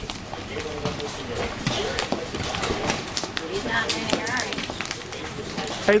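Large hailstones striking the ground and nearby surfaces in scattered sharp knocks.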